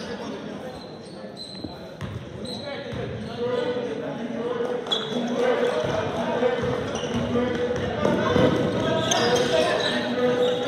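Basketball game on a hardwood gym floor: the ball bouncing, sneakers squeaking in short high chirps, and players' running steps, with indistinct calls from players and the bench echoing in the large gym.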